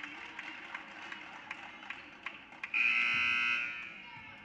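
Gymnasium scoreboard horn sounding once for about a second, a steady buzzing blare, near the end; before it, scattered thuds and taps of play on the court.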